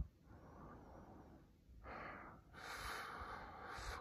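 A man's breathing close to the microphone: a faint breath, a short one about two seconds in, and a longer, louder breath near the end.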